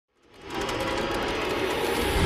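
Sound effect of a channel intro sting: a noisy, rattling riser that fades in quickly from silence and then holds steady, with fast, even ticking on top.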